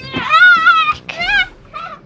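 A high, wavering cry in two long calls and a short third near the end.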